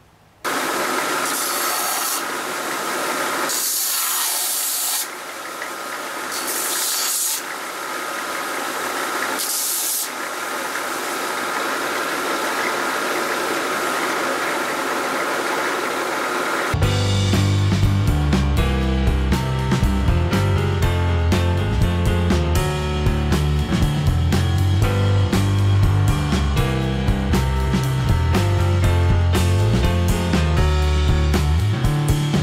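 Belt sander running with a steady whine, a tile pressed against the belt in four short grinding passes over the first ten seconds to bevel its edge. A bit past halfway the sander sound gives way abruptly to background music with a drum beat.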